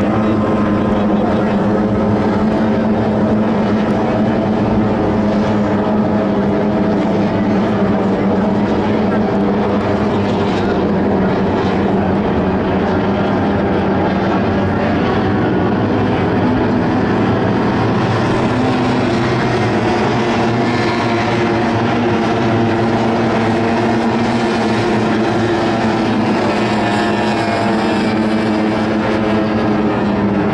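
A pack of tunnel-hull racing powerboats running flat out together, their engines making a loud, steady drone of many layered tones.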